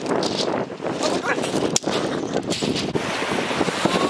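Strong wind buffeting the microphone, mixed with waves washing up a pebble beach.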